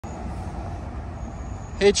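Steady low outdoor rumble with no distinct events, like vehicle traffic or wind. Near the end a man's voice starts speaking.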